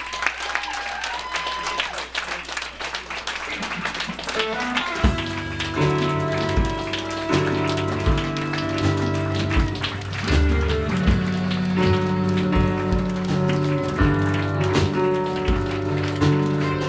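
Audience clapping, then a live band starts playing about five seconds in with heavy, regular bass notes under sustained guitar-like tones, while scattered clapping carries on.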